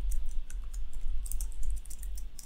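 Rapid typing on a computer keyboard, a quick run of keystrokes as a username and password are entered, over a low rumble.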